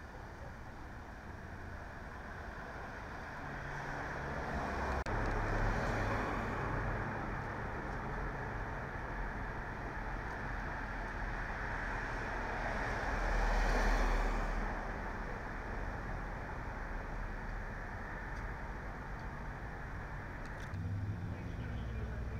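Motor vehicle sounds: a steady low engine hum, with the noise of a vehicle swelling and fading twice, loudest near the middle.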